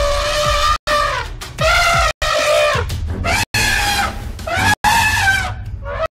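A run of loud, long, high wailing animal cries, one after another, each about a second long, some falling in pitch at the end, with short abrupt breaks between them.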